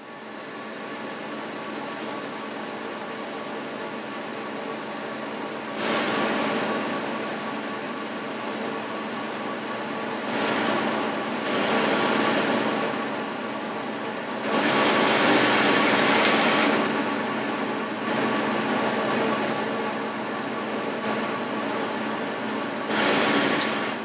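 Boxford metal lathe running steadily with a motor and gear hum, the tool facing and skimming a spinning workpiece. Several louder stretches with a high hiss come as the tool cuts: about six seconds in, twice around eleven to thirteen seconds, a longer one of about two seconds in the middle, and a last one just before the end.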